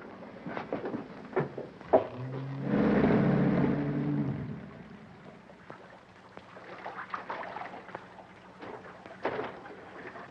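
Scattered knocks and footfalls on wooden stairs. About two seconds in, a low horn sounds once for about two seconds over a rushing noise, then dies away.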